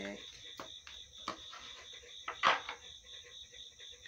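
Crickets chirping steadily in the background, with a few soft clicks and a brief rustling burst about halfway through as a deck of oracle cards is handled.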